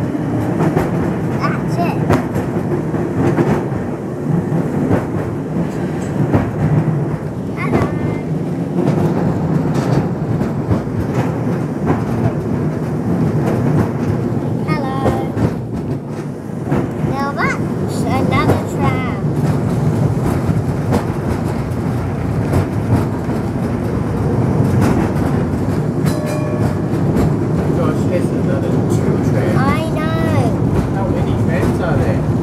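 Heritage electric tram in motion, ridden at its open end: a steady rumble and rattle of the car with wheels clicking over the rail joints.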